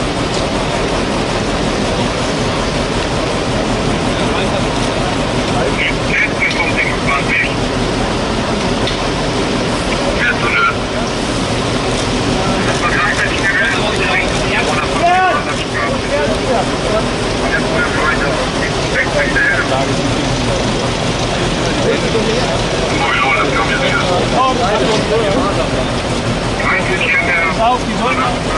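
Scattered distant voices calling out over a loud, steady background noise.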